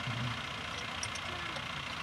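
A fire engine idling steadily, with a few faint ticks about a second in.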